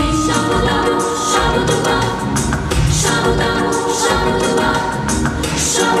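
A children's vocal ensemble singing together over accompanying music with a steady beat.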